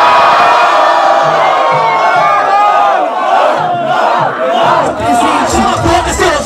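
A crowd of spectators shouting and cheering loudly in reaction to a freestyle rap battle punchline, with a hip-hop beat underneath.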